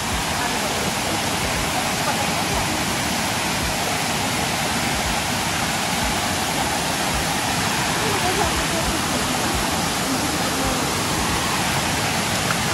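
Small waterfall running steadily over rocks: an even, continuous rush of falling water.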